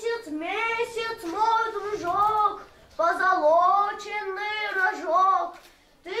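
A child singing solo in long drawn-out notes, in two phrases with a short break a little before the midpoint.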